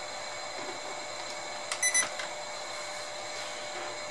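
Steady faint electrical hiss and hum from the bench setup, with one short click about two seconds in as the transformer's mains plug goes into the power strip.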